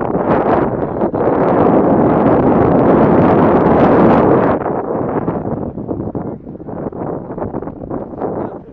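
Wind buffeting the microphone: a loud, even rushing that is strongest over the first four seconds or so, then eases to a weaker, gusty noise.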